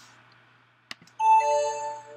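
A single mouse click about a second in, then a web-conference chat notification chime as the private message is sent: a bright ding of several steady tones held for about a second.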